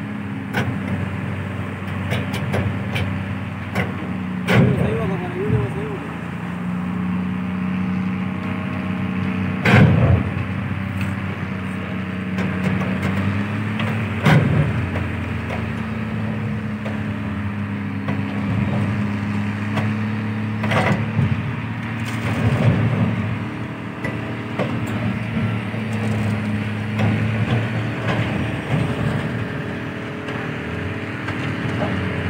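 An engine drones steadily under four or five sharp bangs and creaks of steel as a ship's superstructure, held by chains, is torn apart during ship breaking.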